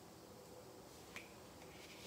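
Near silence: faint room tone with a single faint click a little past a second in.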